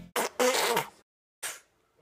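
Baby blowing a raspberry, a buzzy lip sound in three short bursts, the middle one the longest.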